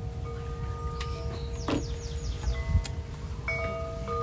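Wind chimes ringing, several long tones overlapping and fading, over a low rumble of wind on the microphone. About two seconds in, a bird gives a quick run of four falling chirps.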